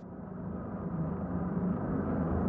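A low, rumbling drone that swells steadily louder.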